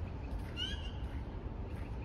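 A single short animal call, rising in pitch, about half a second in, over a steady low outdoor rumble.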